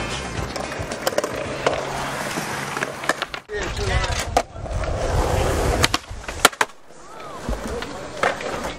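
Skateboard wheels rolling on concrete, with sharp clacks of the board striking the ground, the loudest about six and a half seconds in. Music plays for the first three seconds or so, then cuts out.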